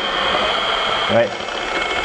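Rotary polisher running steadily at its lowest speed setting, around 600 rpm, with a constant high whine. A new wool pad spins under a wet hand that is pressed on it to strip off loose wool, with a denser hiss during the first second.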